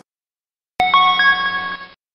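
Short electronic chime of three notes stepping upward, starting about a second in and ringing for about a second before cutting off.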